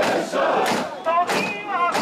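Mikoshi bearers shouting a rhythmic chant in unison as they carry the shrine, with regular loud shouts under a second apart over a mass of crowd voices.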